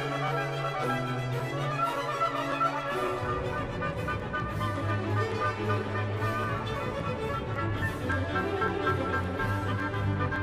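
A symphony orchestra playing classical music with violins bowing sustained notes; about three seconds in, deeper bass notes come in and the sound grows fuller.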